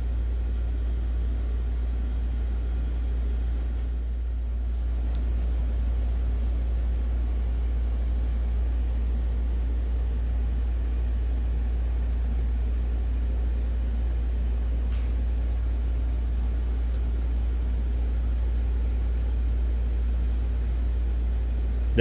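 A steady low rumble that does not change, with a few faint light clicks.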